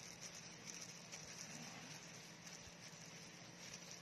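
Near silence with faint, light rustling: thin plastic food-handling gloves crinkling as hands press and flatten a piece of dough.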